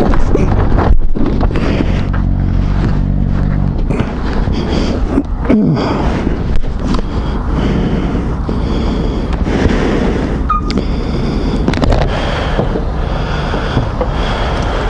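A shaken motorcyclist's heavy breathing inside his helmet, picked up by the helmet camera over a rush of wind and traffic noise, just after a crash. Knocks and scrapes come through it, and a steady low hum stops about four seconds in.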